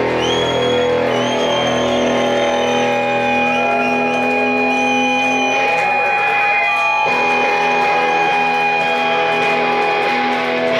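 Live rock band with electric guitars holding long, loud, ringing chords and a high steady tone, with little clear drumming.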